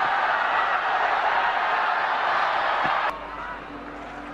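Cricket stadium crowd cheering a well-played shot, a steady din of many voices that cuts off suddenly about three seconds in, leaving quieter ground noise.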